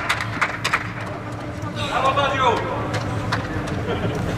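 Scattered hand claps, then a man's short shout about two seconds in, with a faint steady hum underneath.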